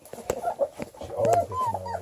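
Redbone Coonhound puppies whining and squeaking as they crowd in to nurse, many short high calls overlapping.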